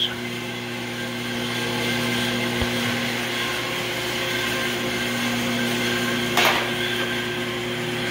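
A machine running with a steady electrical hum, a low buzz under a rushing noise. A brief noisy sound comes about six and a half seconds in.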